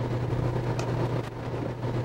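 Steady engine and road drone with a low hum, heard from inside a moving police patrol car.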